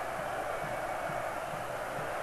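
Steady crowd noise from a football stadium crowd, an even murmur without distinct chants or shouts.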